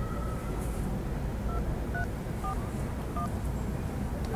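Touch-tone keypad beeps as a number is dialed on a mobile phone: four short two-tone beeps about half a second apart, over a low steady hum.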